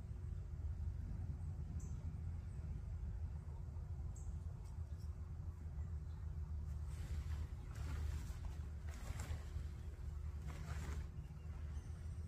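Thin silpoly tent fabric rustling in several bursts through the second half as it is picked up and handled, over a steady low rumble.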